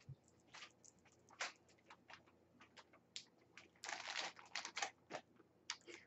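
Faint handling sounds: scattered small clicks and rustles from makeup items being handled, with a brief louder rustle about four seconds in.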